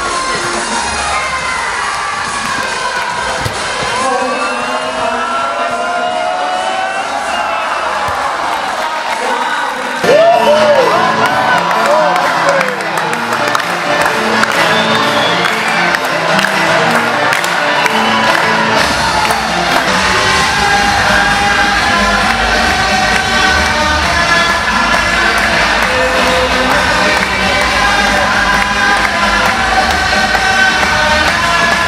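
A large crowd of children cheering and shouting, with music playing. About ten seconds in, the music turns loud with a steady beat, and a heavy bass comes in a little past the middle.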